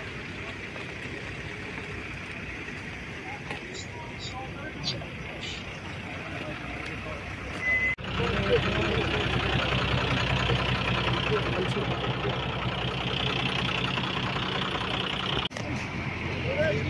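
A vehicle engine idling steadily, with voices calling over it. At first only quieter outdoor noise and faint voices are heard; the engine comes in suddenly at a cut about halfway through.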